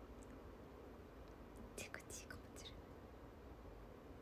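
Near silence: quiet room tone, with a few faint short hissing sounds about two seconds in.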